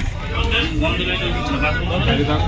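People talking inside a local train carriage, their voices mixed over a steady low rumble.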